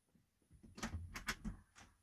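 A door opening as a person comes back into the room: a run of sharp clicks and knocks from the latch and door, starting about half a second in.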